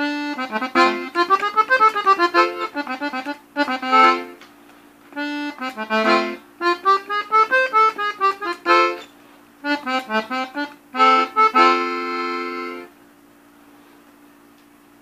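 Three-row diatonic button accordion tuned in F playing a corrido melody in runs of quick notes over held chords, broken by short pauses, and ending on a long held chord.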